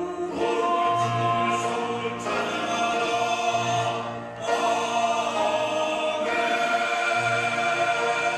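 Men's choir singing a sacred song in harmony, held chords moving from one to the next every second or two, with a short break for breath a little past the middle.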